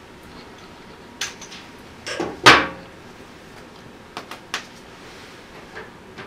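Light clicks and taps of plastic lab ware being handled on a table: a pipette and small sample vials. A few scattered clicks, the loudest a sharp click about two and a half seconds in, then three quick ones in a row past the four-second mark.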